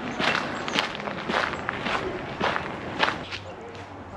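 Footsteps walking on a dirt-and-gravel path, a steady pace of about two steps a second.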